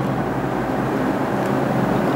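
Steady low background hum with no other events.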